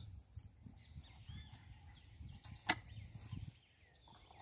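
Garden hoe dragging and scraping loose, composted soil over planted sweet potatoes in uneven strokes, with one sharp click about two-thirds of the way in.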